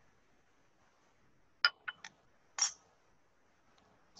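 Glass lab beakers clinking: three quick light clinks about a second and a half in, then a single louder clink about a second later.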